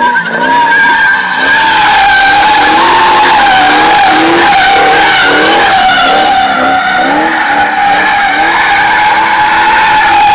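2001 Ford Mustang GT's V8 revving as the car slides in circles, its rear tyres squealing in a loud, steady screech. The engine note rises and falls over and over beneath the squeal.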